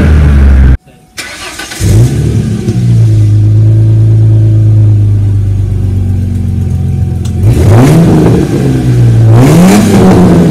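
Straight-piped 3.8-litre V6 of a 2002 Ford Mustang revving. The sound drops out briefly near a second in, then comes back with a rev. It settles into a steady idle and gives two quick revs that rise and fall near the end.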